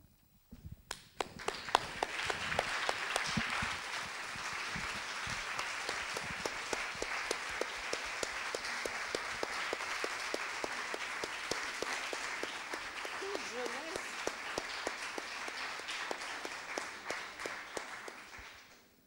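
Lecture-hall audience applauding: a dense, steady round of clapping that builds within the first couple of seconds and tails off near the end.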